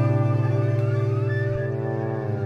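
Slow, calm instrumental relaxation music: a low chord of sustained notes held and slowly fading.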